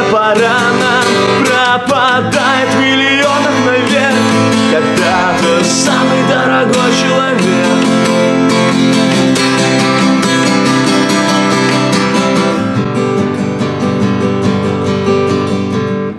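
A Baton Rouge AR81C/ACE acoustic guitar played in chords, with a man singing a Russian song over it for the first few seconds. After that the guitar carries on alone and gets a little quieter near the end.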